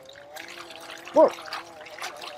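Oset 24R electric trials bike's motor whining steadily, its pitch wavering slightly with speed, over the hiss of tyres on a wet, muddy grass track.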